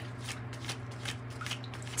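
A deck of tarot cards being shuffled by hand: soft, irregular ticks and slides of card against card.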